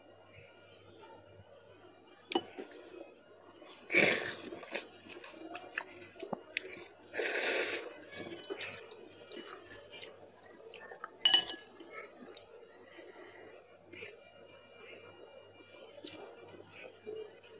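A person chewing a mouthful of instant ramen noodles. There are two louder breathy rushes, about four and seven seconds in, the second lasting about a second. About eleven seconds in comes one sharp clink of a metal fork.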